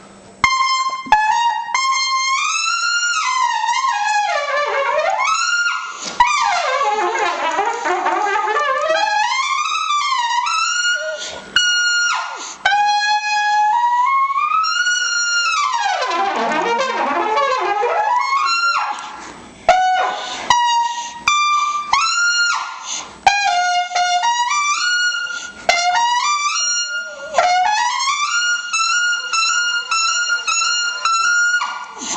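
A trumpet played solo with no accompaniment, mostly screaming high notes held long, with several deep falls and climbs in pitch between them. Short breaks for breath split the phrases.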